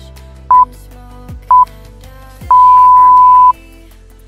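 Workout interval-timer countdown beeps over background pop music: two short beeps a second apart, then one long beep of about a second as the countdown reaches zero, marking the end of the exercise interval.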